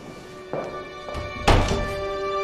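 A door slamming shut with a heavy thud about one and a half seconds in, over sustained orchestral underscore music.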